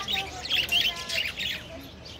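A flock of budgerigars chirping and chattering in quick rapid-fire bursts that ease off near the end.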